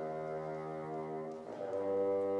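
French horn and bassoon playing sustained low notes together in a chamber piece, moving to new notes about one and a half seconds in.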